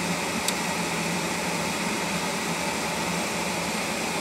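Steady hiss with a low hum inside a car's cabin, typical of the climate-control fan blowing in a running car. There is one faint click about half a second in.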